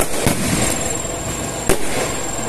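Aerial firework shells bursting: a sharp bang at the start, another about a quarter second later and a third near the end, with a steady crackle of the display between them.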